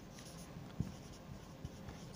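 Faint strokes of a marker pen writing on a whiteboard, with two light ticks.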